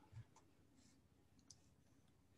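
Near silence with a few faint, short clicks, the sharpest about a second and a half in.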